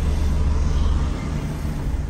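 Steady low rumble of a car running, easing off slightly near the end.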